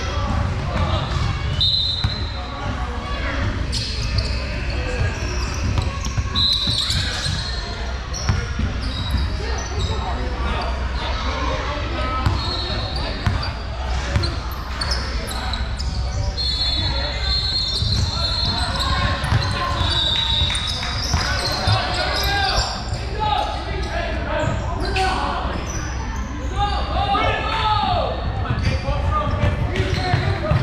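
Basketball game sounds in a gym, echoing in the large hall: a ball bouncing on the hardwood court, short high sneaker squeaks and players and spectators talking.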